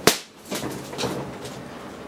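A single sharp knock right at the start, then a few much fainter taps.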